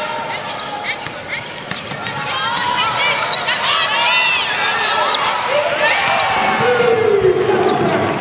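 Live basketball game sound in a large, sparsely filled arena: sneakers squeaking on the hardwood court, the ball bouncing, and players' voices calling out. There is a burst of short, high squeaks in the middle, and a longer falling call near the end.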